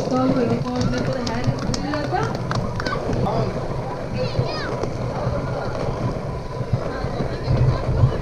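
Dog sled runners gliding over packed snow with a steady hiss, while spectators along the street shout and cheer. There are a few short clicks, and a high call comes about halfway through.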